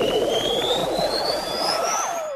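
Electronic music: a pure synthesizer tone glides steadily upward in pitch over a dense, noisy mid-range texture.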